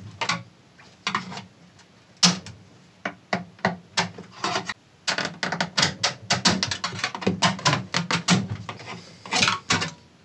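Screwdriver prying the plastic front grille off an Altec Lansing AVS300 subwoofer cabinet: a few scattered clicks at first, then a rapid run of plastic clicks and snaps in the second half as the grille works loose.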